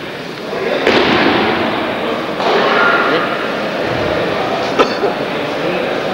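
Scuffling and rustling of martial-arts uniforms as a jujutsu arm lock is worked on a partner lying on the mat, with a single sharp slap or knock near five seconds in.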